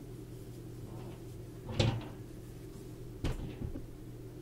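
Two short knocks, a louder one about two seconds in and a softer one about three seconds in, from crocheted cotton work and a hook being handled on a tabletop, over a low steady hum.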